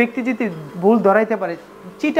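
A man talking to the camera in short spoken phrases. A faint steady hum runs underneath.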